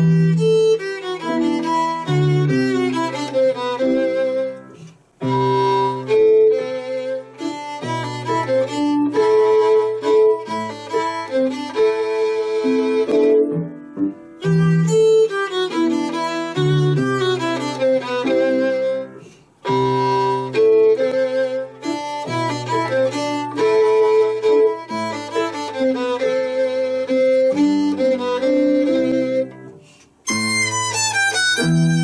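Violin playing a melody with grand piano accompaniment, phrase after phrase, with a few short breaks between phrases.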